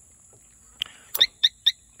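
A motorcycle's motion-sensing security alarm gives a click and then three short, high electronic chirps as the bike is touched. This is a warning chirp that means the alarm's shock sensor is set too sensitive.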